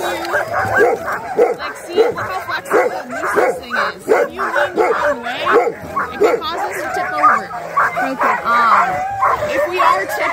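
A chorus of many sled dogs barking and yipping together, overlapping calls that rise and fall without a pause.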